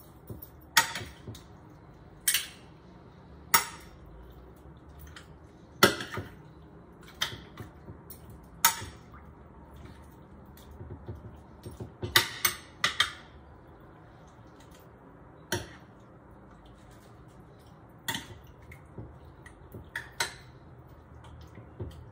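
Metal spoons clinking against a glass baking dish while tossing chunks of raw pork in a liquid marinade. Sharp, irregular clinks a second or two apart, with a quick run of them about halfway through.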